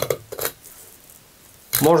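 A few faint scrapes and clicks of a filleting knife blade running along a zander's rib bones as the fillet is cut away, about half a second in.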